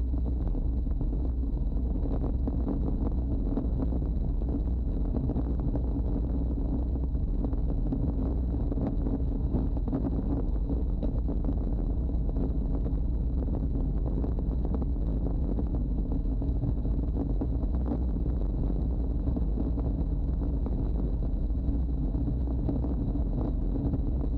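Steady wind rushing over the camera microphone of a road bike freewheeling downhill at about 70 km/h. The noise is continuous, with a faint steady high tone.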